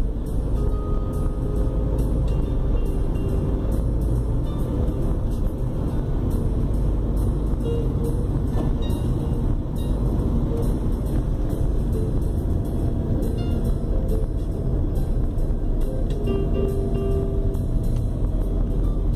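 Steady low road and engine rumble of a Peugeot 2008 driving, heard from inside the car, with quiet background music over it.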